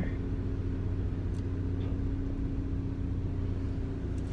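Steady low engine rumble with a constant hum, heard from inside a car's cabin.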